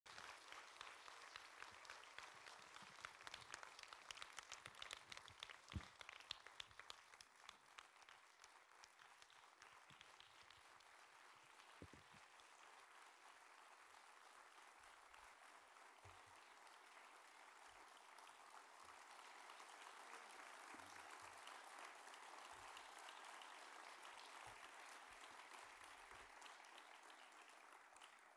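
Faint audience applause: dense, distinct hand claps for the first ten seconds or so, then blending into a steady, even wash of clapping.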